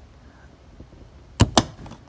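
Clear plastic lens cover of a 2014 Honda Odyssey's roof dome light being pressed back into its housing. Two sharp clicks come close together about one and a half seconds in as it snaps into its clips.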